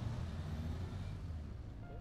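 Low rumbling outdoor city ambience in the alley, steady and slowly fading, with a few music notes coming in near the end.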